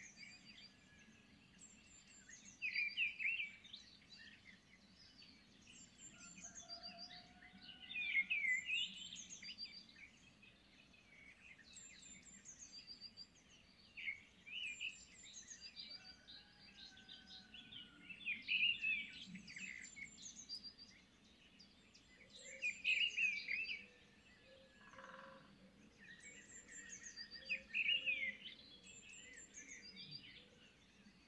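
Small birds singing: one bird repeats a short, varied song phrase about every five seconds, with other birds chirping in between.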